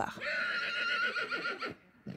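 A horse whinnying: one high, quavering call lasting about a second and a half.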